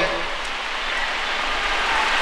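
A steady, even hiss of background noise during a pause in a man's speech.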